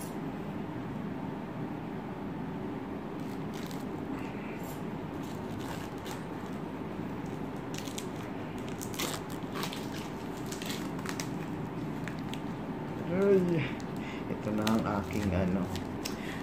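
Plastic wrapping crinkling as it is picked at and peeled off a phone's retail box, in scattered soft crackles over a steady background hum.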